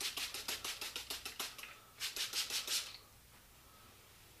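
Hand trigger sprayer squirting water onto a cast concrete piece to wet it: a run of rapid squirts, several a second, then a pause and a second, shorter run, ending about three seconds in.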